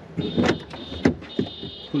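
Inside door handle of a car being worked, clicking a few times while the door stays locked, over a steady high tone.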